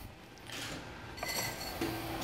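Faint light clinks and handling noise of a small chrome beer-line fitting being worked in the hands.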